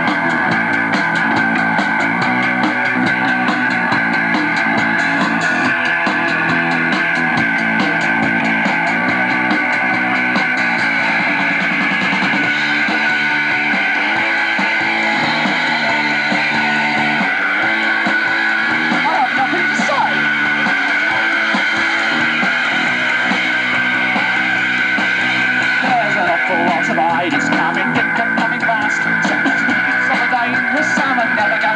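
Live rock band playing a song at a loud, steady level: guitar chords changing every second or two over bass and drums, with cymbals ticking throughout.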